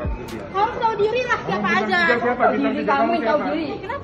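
People talking in a large echoing hall, voices overlapping in a face-to-face argument.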